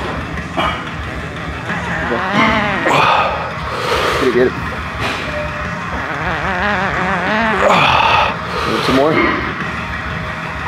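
A man straining and groaning with effort through the last reps of a heavy dumbbell bench press taken to failure. The strained voice wavers in pitch and is loudest around three seconds and eight seconds in.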